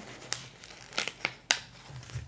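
Paper planner sticker sheets crinkling in the hands as a sticker is peeled from its backing, with a few sharp ticks.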